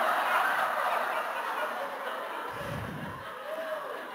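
Audience laughing in a large hall, loudest at the start and slowly dying away.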